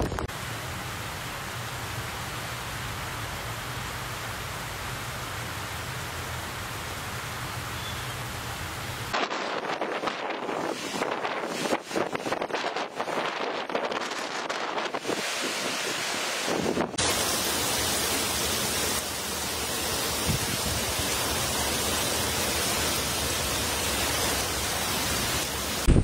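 Torrential typhoon rain falling in a steady rush. A low rumble runs under it for the first third. In the middle stretch there is a clatter of close drips and splashes over it, before the steady rush returns.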